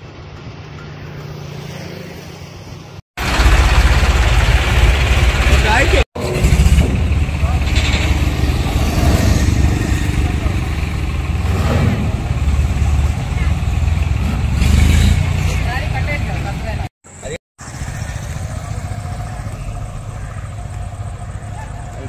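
Road traffic passing on a highway, with people's voices in the background and a heavy low rumble through the middle of the clip. The sound drops out abruptly for a moment three times.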